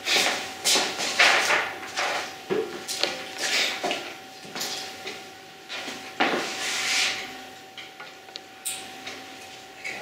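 Handling noise as a stethoscope is fetched and its earpieces fitted: a string of irregular soft rustles and scrapes of clothing and tubing, with footsteps, and a few light ticks near the end.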